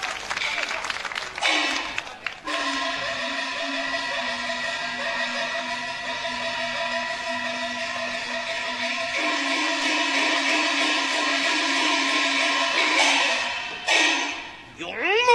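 Peking opera stage music. For the first two seconds or so there is a noisy patch of crashes or clapping, then instruments hold a long steady sustained chord that shifts once around the middle.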